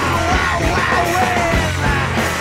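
Loud rock music with a yelled vocal over drums and bass.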